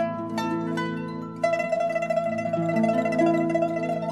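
Pipa playing a slow melody: plucked notes ring out, then from about a second and a half in one note is held as a rapid tremolo over sustained lower notes.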